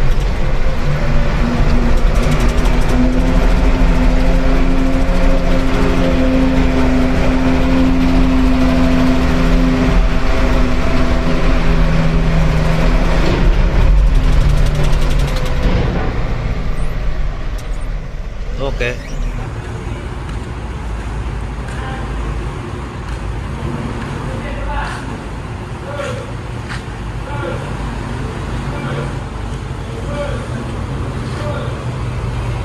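Mitsubishi Fuso diesel truck engine pulling steadily under load as the truck climbs a steep ramp, heard from inside the cab with a deep rumble. About sixteen seconds in it gives way to a quieter, echoing vehicle-deck din with scattered knocks.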